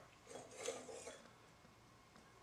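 Near silence: a faint, brief rustle in the first second, then quiet room tone.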